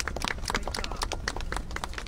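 Scattered applause from a small group of people clapping, a dense irregular patter of hand claps.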